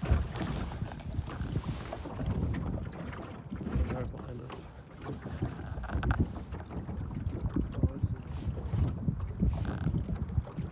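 Wind buffeting the microphone and small waves lapping against the hull of a floating layout blind, an uneven low rumble with irregular slaps.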